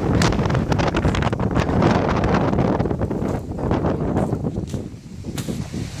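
Snowstorm wind blowing hard across the phone's microphone, a loud rushing buffet that swells and falls in gusts, easing briefly about five seconds in.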